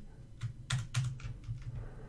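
Computer keyboard keys clicking: a handful of separate, irregular keystrokes while code is being edited.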